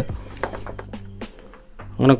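Faint background music with a steady low hum under it and a few light clicks.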